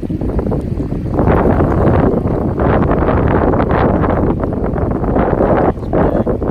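Wind buffeting the microphone in loud, uneven gusts over the rushing water of a shallow river.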